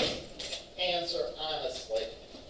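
Indistinct voices in a room, with a sharp click at the very start.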